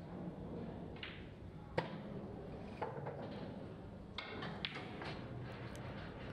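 Pool balls clicking: one sharp click about two seconds in as the cue ball is struck, then a few fainter knocks of balls, over a steady low hum of the hall.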